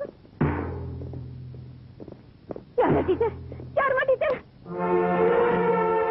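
Dramatic film background score: two deep timpani strikes about two and a half seconds apart, each leaving a long low rumble, followed near the end by a long held ringing tone.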